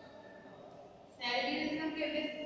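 A woman's voice starts speaking about a second in, after a short quiet pause.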